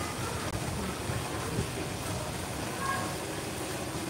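Steady rushing of water in an outdoor koi pond, an even hiss without breaks.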